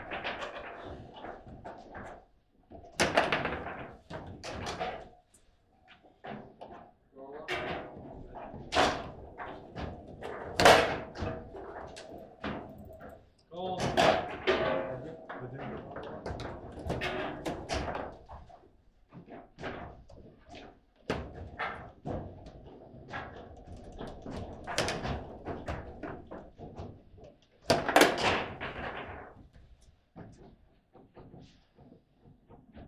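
Foosball table in fast play: sharp clacks of the ball struck by the plastic men and knocks of the steel rods against the table, coming in irregular bursts with short lulls. A goal is scored in the first half.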